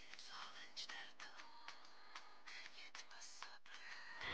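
Faint rustling of a cloth garment being unfolded and handled, with soft irregular crackles.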